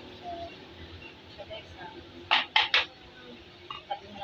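Three quick clinks of kitchenware knocking together, a little over two seconds in.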